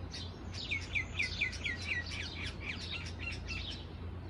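Many small birds chirping together in a tree, with short high calls overlapping throughout. About a second in, a run of quick falling notes, about five a second, stands out and is the loudest part. A steady low rumble lies underneath.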